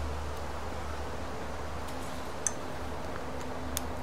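A few small, sharp ticks of a steel guitar string and fingers against a Telecaster's tuner post as the string is wound on, in the second half, over a steady low hum.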